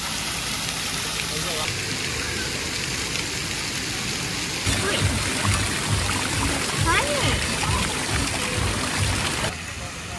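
Splash-pad water feature pouring water in a steady, splashing stream. About halfway in it changes to a ground jet bubbling and spraying, with irregular low rumbling underneath.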